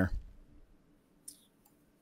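The tail of a man's spoken question, then near silence with a single faint, brief click a little over a second in.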